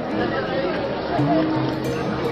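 A man's voice over a public-address system, with music playing underneath.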